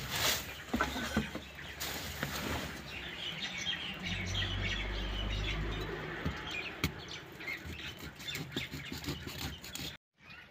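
Plastic silage-bale wrap being cut with a knife and pulled back by hand, with rustling and scattered clicks. Small birds chirp in the background.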